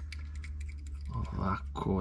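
Small metal short-shifter parts clicking lightly as they are turned over in the hands, over a steady low hum. A man's voice sounds briefly in the second half.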